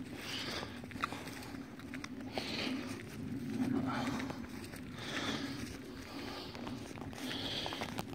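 A person walking through grass: soft footsteps and rustling, with faint handling noise from a handheld phone.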